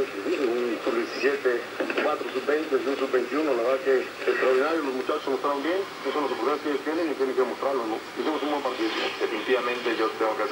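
An AM radio broadcast voice played by a homemade one-chip TA7642 AM radio, sounding thin with no bass.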